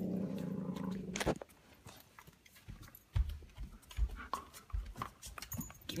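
A dog growling in a low, rough, sustained rumble for about a second, then scuffling and soft thumps while it is handled.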